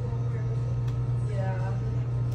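A steady low hum, even in level throughout, with faint voices in the background about one and a half seconds in.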